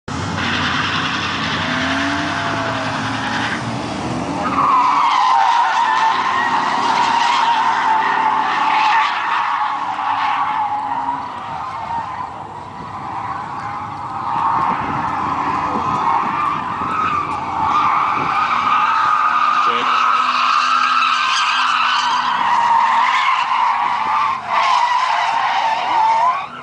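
Car tyres squealing in long, wavering drifts, with engines revving underneath. The squeal sets in about four and a half seconds in, eases briefly near the middle, then comes back strongly.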